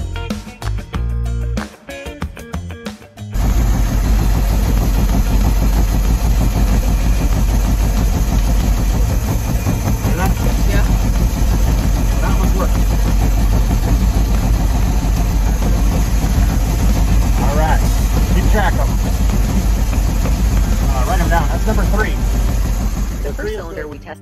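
Crusader 270 marine V8 engine running loud and steady in its open engine bay, cutting in abruptly about three seconds in. It runs while its cylinders are tested one at a time by pulling spark plug wires, to find the dead cylinder behind the engine's rough running.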